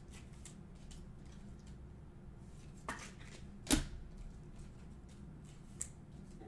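Trading cards handled on a tabletop: a few soft clicks and taps, the loudest about three and a half seconds in, over a low steady hum.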